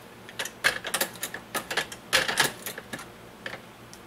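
Shotshell reloading press worked by hand to star-crimp a 20-gauge shell: a run of irregular metallic clicks and clacks, bunched most thickly in the middle.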